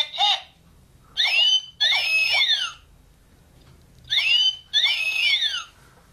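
Plush talking macaw toy giving two electronic squawks, each a pair of high whistle-like tones gliding up and down across each other and lasting about a second and a half, a few seconds apart.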